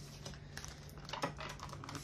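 Tarot cards being handled and shuffled by hand: a run of light, irregular clicks and taps.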